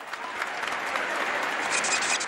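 Applause from a crowd, with voices mixed in, as a steady wash of clapping; a high steady tone joins near the end.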